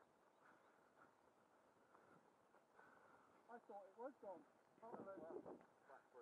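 Near silence, with faint, distant men's voices talking in the second half.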